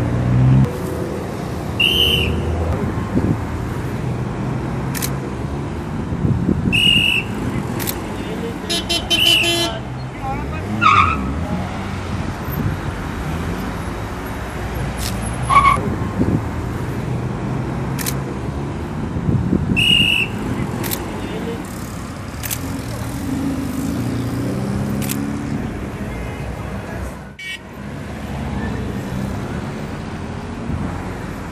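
Steady roadside traffic of passing cars, broken by about four short, shrill whistle blasts from a traffic police whistle, with voices talking.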